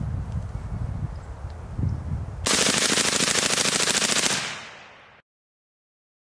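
A single long full-auto burst, about two seconds of rapid, evenly spaced shots, from a registered M16 lower firing Brown Bear .223 steel-case ammunition through a suppressed AR-15 upper. It starts a couple of seconds in, then dies away and cuts off abruptly.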